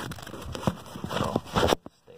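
Handling noise from a phone being moved and set in place: rubbing and a few irregular knocks, the loudest just before the sound cuts off suddenly near the end.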